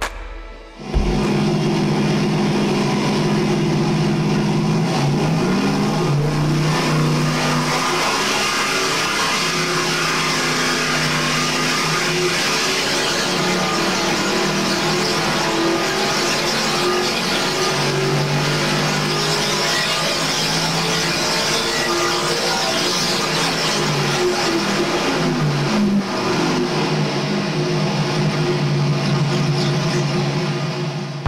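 Big-block Chevy 496 V8 running under load on an engine dyno during a power pull on oxygenated race fuel. It starts about a second in, and its pitch slides up and down as the rpm changes.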